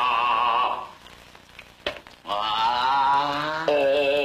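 A voice singing long held "ah" notes with vibrato, like a vocal exercise. One note ends just under a second in, another is held from about two seconds in, and a lower one starts near the end.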